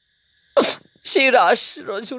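After a brief pause, a short, sharp breathy burst about half a second in, then a man's voice resuming a Bengali devotional narration.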